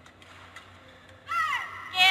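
A high-pitched voice yelling twice, each yell falling in pitch, the second louder and starting near the end, after a few faint taps.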